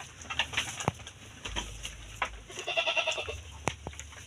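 A young sheep bleating once, fainter than the calls around it, about three seconds in. A few short sharp clicks and rustles of hooves stepping in straw are heard around it.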